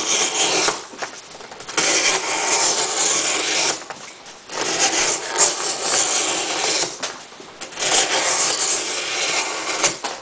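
A Gerber Profile knife's 420HC steel blade slicing down through cardboard in long scraping strokes, about four of them with short pauses between. The cuts are going easily: a sharp edge slicing well.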